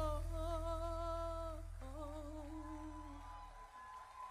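A woman singing two long held notes with vibrato into a microphone, over a sustained low bass note that fades out about three and a half seconds in, leaving the voice quieter near the end.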